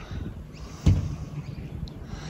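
Low rumbling outdoor background noise, with a single sharp thump about a second in.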